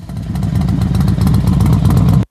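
A loud, steady engine-like rumble with rapid fine clatter, fading in quickly at the start and cutting off suddenly.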